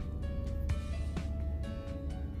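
Background music: a melody of sustained notes with sharp plucked attacks, over a steady low rumble.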